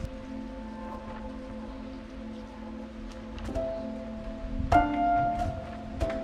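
Background music: soft held tones, with a struck note a little past halfway and a louder one nearer the end.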